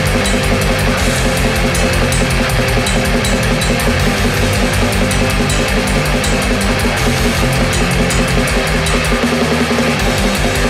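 Atmospheric black metal: dense distorted guitars over fast, relentless drumming with a rapid, even cymbal beat and a driving low pulse. The lowest bass drops out briefly near the end.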